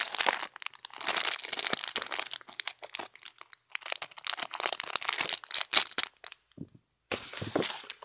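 Clear plastic doll packaging crinkling as it is handled and cut open with scissors, in short irregular bursts of crackling with brief pauses.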